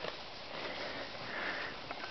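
A farm animal sniffing softly with its nose right up against the microphone, in a few quiet breaths.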